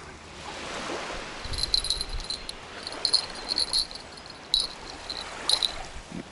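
Small waves lapping steadily on a sandy shore. From about a second and a half in, a run of short, crisp, irregular scratching sounds.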